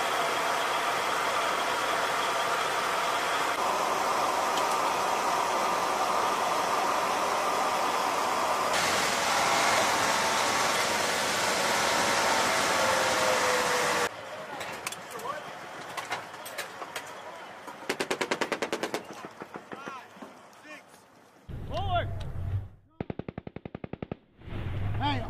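Loud, steady running noise inside the troop compartment of an armoured military vehicle for about fourteen seconds. Then scattered gunshots, with two rapid bursts of machine-gun fire, one at about eighteen seconds and one near the end, and voices just before the second burst.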